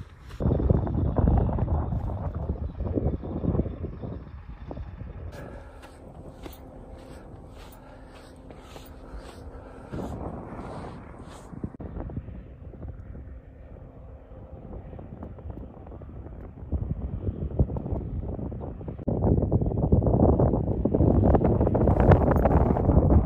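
Wind buffeting the microphone in gusts, loudest in the first few seconds and again near the end, with a quieter lull in between.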